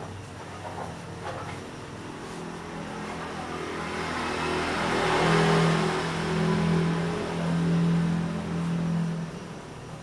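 A motor vehicle's engine going by, growing louder to a peak in the middle and fading away near the end.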